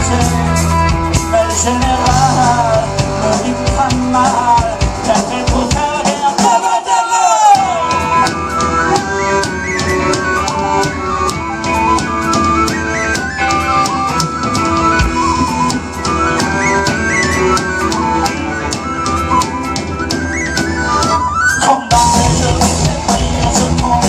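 Live rock band playing with drum kit, bass guitar and electric guitar. About six seconds in the bass and drums drop out briefly under a falling melodic line, then the full band comes back in.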